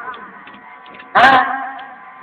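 A man's voice pausing mid-sermon: his last phrase fades out, then one short spoken word about a second in.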